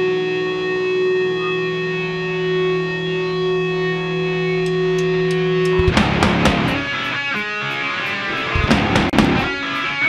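Live heavy metal band: a held, distorted electric guitar note rings steadily for about six seconds, then after a few light ticks the full band comes in with drums, distorted guitars and bass.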